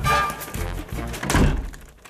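A wooden door being pushed shut with heavy thuds, the loudest about a second and a half in, over a burst of music.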